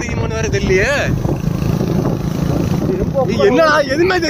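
Motorcycle running steadily on the move uphill, with wind on the microphone. A voice calls out in the first second and again shortly before the end.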